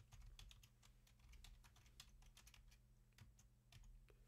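Faint typing on a computer keyboard: a quick, irregular run of keystrokes as an IP address is entered at a terminal prompt, over a low steady hum.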